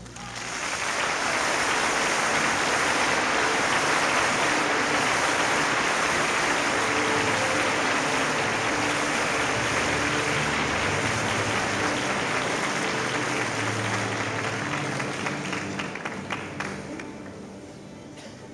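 Audience applauding in a concert hall right after an orchestral piece ends; the applause holds steady, then thins into scattered claps and fades near the end.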